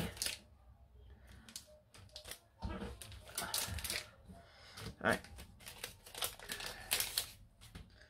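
Rummaging through craft supplies: a run of small clicks and rustles from packets and card pieces being handled, with a couple of mumbled words.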